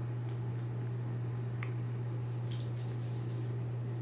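Steady low hum of an electric neck massager running, with soft scratchy rustles of hands rubbing oil through hair.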